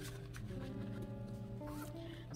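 Soft background music of slow, sustained chords, with a few faint clicks and rustles from paper money and a plastic binder pocket being handled.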